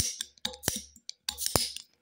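Flat metal bottle opener clicking and scraping against a stubborn crown cap on a glass beer bottle: several sharp metallic clicks about every half second as the opener slips on a cap that is hard to get off.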